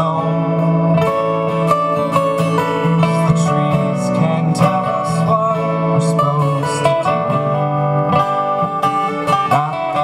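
Two acoustic guitars playing together in a live folk song, strummed in a steady rhythm with ringing chords.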